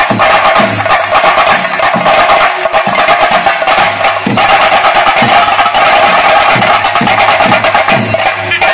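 A chenda drum ensemble playing theyyam drumming: fast, dense, loud strokes with a steady high tone held over the drums.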